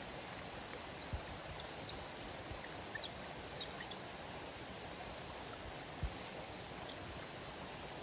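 Quiet outdoor ambience: a steady faint hiss with scattered short, high chirps and ticks, the sharpest about three seconds in.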